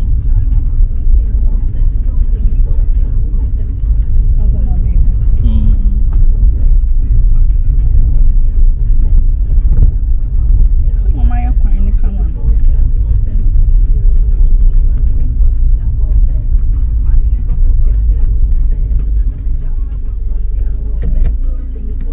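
Car driving on an unpaved dirt road, heard from inside the cabin: a loud, steady low rumble of tyres and engine, with a few brief voice sounds over it.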